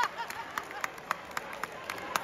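Audience clapping in a hall: sharp single handclaps at a steady pace of about three to four a second, over a faint crowd murmur.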